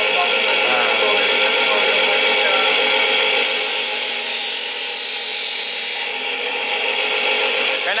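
Electric bench grinder running with a steady whine while a hand-forged steel knife blade is held against its wheel, the grinding hiss coming in two stretches, the first up to about three seconds in and the second near the end: the final grinding stage of the knife.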